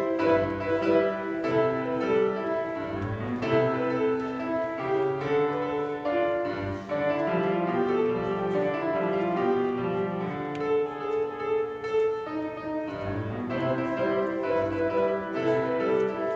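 Grand piano played by a child: a steady run of melody notes over lower chords.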